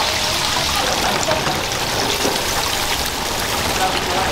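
Lobster pieces deep-frying in a fryer of hot oil: a steady sizzle of bubbling oil.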